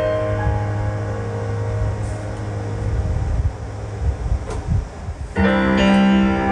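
Roland JUNO-DS synthesizer keyboard playing a piano-like chord that is held and slowly fades. A new chord is struck about five seconds in.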